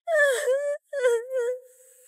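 A woman's anguished wailing: two drawn-out, high-pitched cries with a short break between them, the second held on one note and trailing off near the end.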